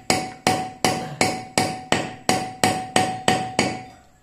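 Hand hammer striking metal on an anvil block in a steady rhythm of about three blows a second, each blow ringing briefly.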